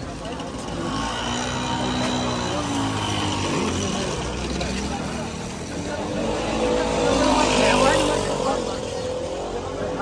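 Small motorbike engines passing close by in a narrow lane, the loudest swelling up and fading away about eight seconds in, over the voices of people nearby.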